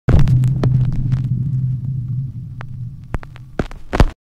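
Intro sound effect: a low electrical hum that starts abruptly and fades away over a few seconds, with scattered crackles and clicks like an old film, ending in a short burst of clicking glitch noise.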